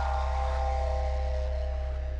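The held final chord of a TV show's electronic opening theme music, sustained over a deep bass note and slowly fading away.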